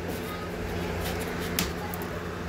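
Faint handling sounds from the pedal plane's body and pads, with a couple of light taps about a second in and shortly after, over a steady low hum.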